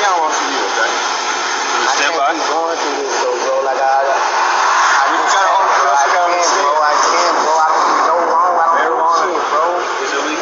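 Men's voices talking back and forth, heard through a police body camera's thin, band-limited audio.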